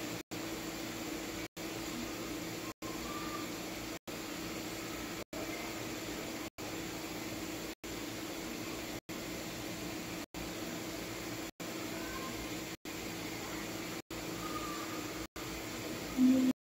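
Steady background hiss with a low hum, with no clear event standing out; the sound cuts out completely for an instant about every second and a quarter, about thirteen times.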